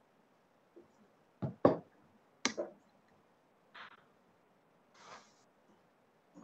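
A video-call audio line on which the remote speaker's voice has dropped out: only a few sharp clicks and knocks, about one and a half to two and a half seconds in, and two brief hissy bursts later, over an otherwise quiet line.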